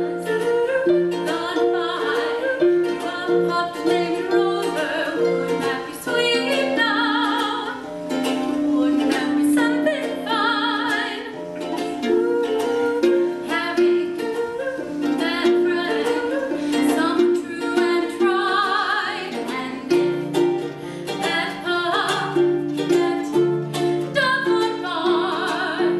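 Live music: harp and ukulele playing a gentle lullaby arrangement with many plucked notes, while a woman sings, her voice wavering with vibrato on held notes.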